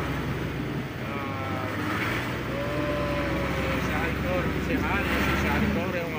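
Dump truck's diesel engine running with a steady low drone as the truck drives through floodwater across a river crossing.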